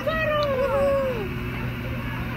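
A person's high-pitched voice giving one long drawn-out call that holds, then slides down in pitch and fades about a second in, over a low steady hum.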